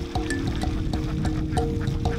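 A flock of domestic ducks quacking many times over, heard together with background music of held notes.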